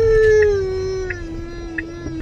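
A young child's long, drawn-out vocal note: one sustained tone that slowly falls in pitch and fades near the end.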